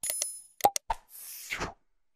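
Sound effects of an animated subscribe button: a short bell-like ding as the notification bell is clicked, then a quick pop and a couple of clicks, then a short whoosh near the end.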